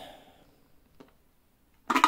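Plastic dust container of a Rowenta X-Force 11.60 cordless stick vacuum being twisted loose by hand: mostly quiet handling, with a faint click about halfway and a sharper click near the end as it comes free.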